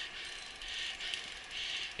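Mountain bike's rear freehub clicking rapidly as the bike coasts downhill, a steady ratcheting buzz.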